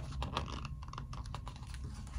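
Quick, soft, irregular clicks and rustles of hands handling a picture book and a fabric hand puppet, over a steady low hum.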